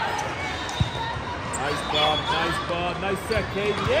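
Athletic shoes squeaking in short, sharp chirps on a sport-court floor as players move during a volleyball rally, with a single hit of the ball about a second in, over the steady chatter of a crowd in a large hall.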